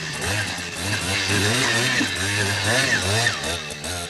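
Small trials motorcycle engine revving up and down as it climbs over the course obstacles.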